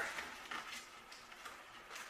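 Faint handling of wooden stretcher strips being pushed together at a mitred corner joint by hand: a few soft clicks and rubs of wood on wood.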